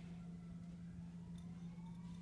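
Quiet room tone: a steady low hum, with a faint tone slowly rising in pitch through the second half.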